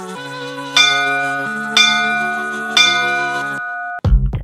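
Three bright bell chimes, one a second apart, over sustained synth chords, counting down to the start of the next exercise. The chords and the last chime stop shortly before the end.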